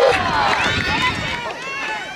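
Several voices shouting and calling out at once, overlapping with high rising and falling calls, loudest near the start and easing off a little later.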